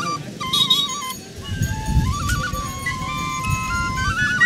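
Bamboo flute playing a melody of stepped notes with quick trills, settling into a long held note over the second half, with a low rumble underneath.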